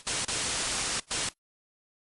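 Steady hiss of static noise, broken by a short dropout about a second in and cut off suddenly after about a second and a half, leaving dead silence.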